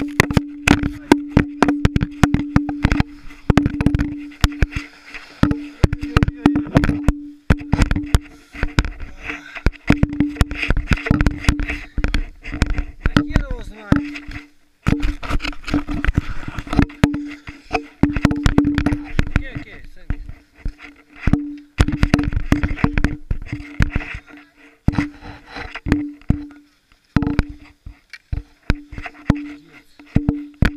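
Helmet camera in its housing, torn loose in a ski fall and hanging from its safety tether, knocking and rubbing against a ski jacket and helmet in rapid irregular clatters, with a steady low hum that keeps cutting in and out.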